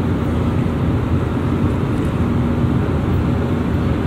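Airbus A320-200ceo passenger cabin noise in cruise flight: a steady low rush of airflow and engine noise, with a faint steady drone tone in it.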